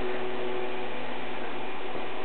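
Steady hiss of background noise with a faint low hum underneath; no distinct sounds stand out.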